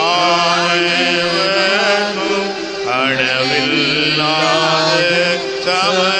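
A Tamil devotional hymn, with a wavering sung melody over steady held accompanying notes.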